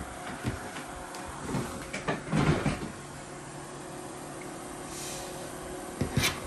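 Small desk fan running steadily with a low hum and an even hiss of moving air. Over it come a few short knocks and rustles of the recording phone being picked up and moved, loudest about two to three seconds in.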